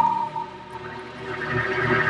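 Film background score: a sustained high tone that fades soon after the start, then softer music swelling again toward the end.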